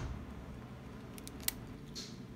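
A hamster crunching on a chip held in its paws: a few short, sharp crunches in quick succession past the middle, the last the loudest.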